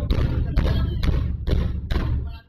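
A quick run of loud, heavy thumps, about two a second, each with a deep low end.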